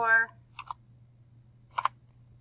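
Computer keyboard keystrokes: two quick clicks about half a second in and another near the end, as a spreadsheet formula is finished and entered.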